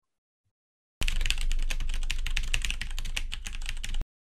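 Computer keyboard typing: a fast, dense run of key clicks that starts about a second in and stops abruptly. It is a typing sound effect for text being typed out on screen.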